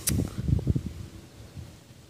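Wind buffeting a handheld camera's microphone, making irregular low rumbling thumps with a sharp click at the start, then dying away to a quiet outdoor background.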